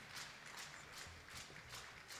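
Faint rhythmic applause: an audience clapping in unison, about three to four claps a second.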